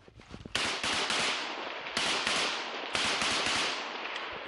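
Automatic small-arms fire in long bursts: a few faint single shots, then a loud burst about half a second in, with fresh bursts starting at about two and three seconds, each running into the next.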